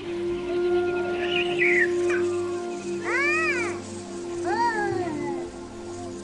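An animal calls twice with a squealing cry that rises and falls in pitch, over steady background music.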